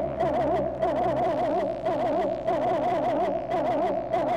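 Hardstyle electronic music: a synthesizer tone warbling rapidly up and down in pitch over a steady low synth drone.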